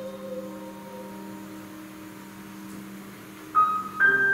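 Piano chord left ringing and slowly dying away after a loud passage. About three and a half seconds in a single high note is struck, and playing starts again right at the end.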